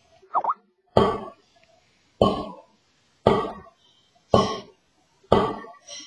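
Snare drum played with single free strokes, the stick let rebound: five even hits about a second apart, each ringing briefly, heard through a video call.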